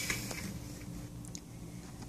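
Faint handling noise: a few light clicks and taps as a small plastic doll and a clear plastic blister pack are moved about on a table, over a steady low hum.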